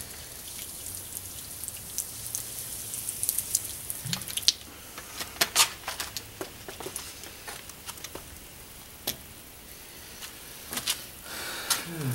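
Cola poured from a plastic bottle, splashing onto a concrete floor with a steady hiss for the first few seconds. After that come scattered drips and small ticks.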